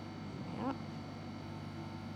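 Steady low electrical hum under room tone, with one brief rising voiced "yeah" about half a second in.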